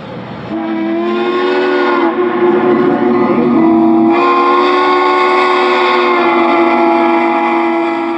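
Steam locomotive chime whistle blowing one long blast of several tones at once, its pitch shifting slightly about four seconds in, then fading out near the end.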